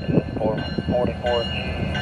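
Diesel locomotive engines rumbling steadily at low throttle as the light engine rolls slowly toward the camera, under a crew radio call of the signal.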